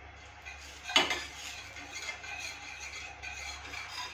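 A spatula knocks once on a flat tawa griddle about a second in, then rubs and scrapes back and forth across its surface, spreading oil over the pan.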